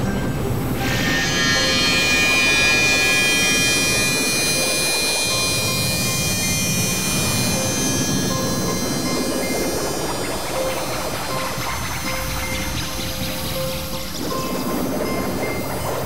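Experimental synthesizer drone and noise music: a dense noisy wash with a stack of steady high tones that comes in about a second in and thins out around the middle, followed by short held notes lower down.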